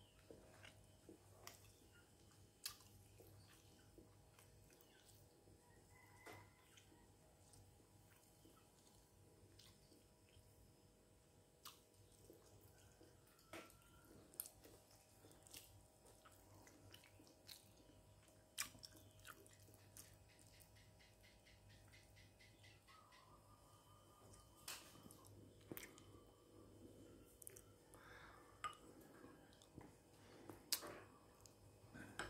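Faint chewing and mouth noises from eating stir-fried pig intestines with rice, broken by scattered sharp clicks and taps, over a low steady hum.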